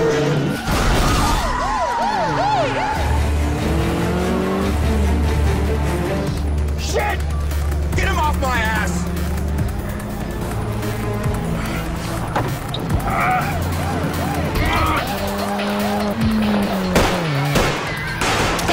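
Film car-chase sound mix: a music score over car engines racing and tyres squealing and skidding, with wavering siren-like tones.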